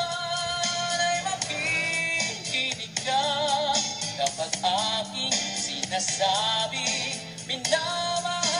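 A male singer sings a Tagalog love ballad into a microphone over a backing track, holding long notes with vibrato.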